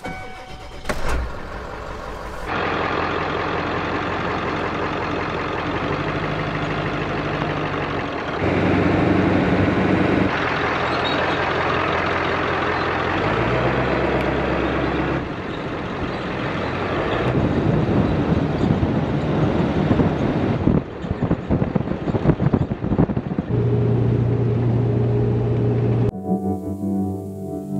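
Ford 7.3-litre diesel pickup engine started and then running on the road, with road and wind noise. It is heard as a string of short clips that cut abruptly every few seconds.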